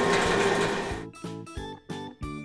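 Semi-truck engine sound effect, a steady mechanical running noise that fades out about a second in, followed by short bouncy notes of background music.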